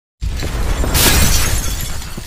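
Glass-shattering sound effect over a deep low rumble, starting a moment in, with a louder crash about a second in.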